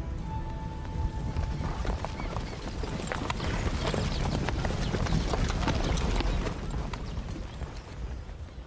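Hooves of a large body of cavalry horses clattering on the ground, a dense mass of hoofbeats that builds about two seconds in and thins toward the end, over orchestral film music.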